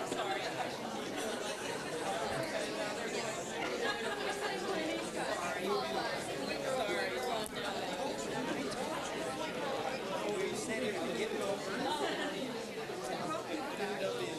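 Many people talking at once: a steady hubbub of audience chatter in a large room, with no single voice standing out.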